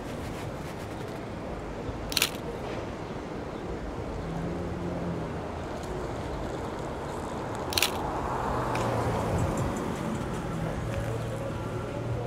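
Two short, sharp phone-camera shutter clicks about five and a half seconds apart, over steady city street noise.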